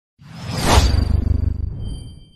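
Studio logo-intro sound effect: a whoosh over a deep rumble that swells to its peak just under a second in, then fades, with thin high ringing tones coming in near the end.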